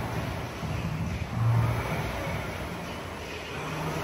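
Air rowing machine's fan flywheel whirring, swelling and easing with each stroke of the handle.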